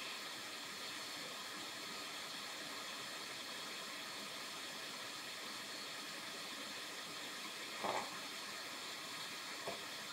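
A fan running steadily: an even rushing hiss with a few thin high whining tones over it. A brief faint knock comes near the end.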